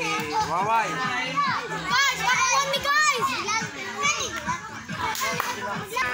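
A group of young children shouting and chattering during play, many high voices overlapping, with a few sharp cries rising and falling in pitch around two to three seconds in.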